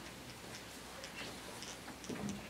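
Faint, irregular light ticks and rustles of pens and paper being handled at a table, over low room tone.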